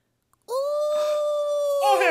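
A dog howling: one long, steady howl starting about half a second in and dropping in pitch as it fades.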